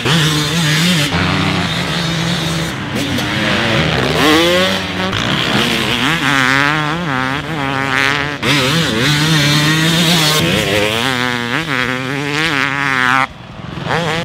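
Husqvarna TC300 two-stroke motocross bike's 300cc engine being ridden hard, its pitch climbing repeatedly as the throttle opens and falling away when it closes.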